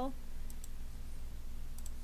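Short computer mouse clicks, a pair about half a second in and another near the end, over a steady low electrical hum.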